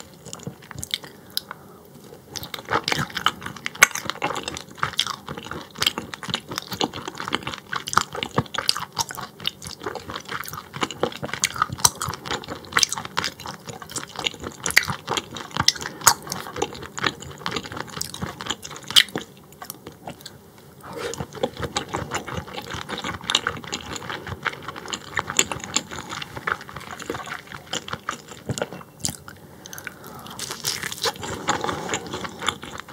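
Close-miked chewing of raw croaker sashimi: a dense run of small mouth clicks, with short lulls about two seconds in and about twenty seconds in.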